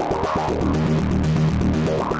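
Software synthesizer patch played by fingers on an MPE touch pad. Sustained low notes with distortion sound under a fast, even pulse, while the finger's sideways slide moves a resonant high-pass filter.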